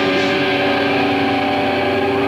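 Electric guitars and amplifiers sustaining a held chord as a song ends: a steady, loud drone of several ringing tones over a low amp hum.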